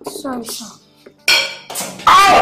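Dishes and cutlery clinking, with a sharp ringing clink a little over a second in and a lighter one just after.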